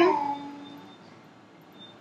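A woman's voice trailing off at the end of a word, held on one pitch and fading out within the first second, then faint room hiss.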